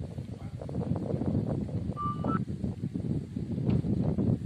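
Low rumbling and rustling noise from a handheld camera being carried along on foot, with irregular soft knocks. A short two-step high tone, rising slightly, comes about two seconds in.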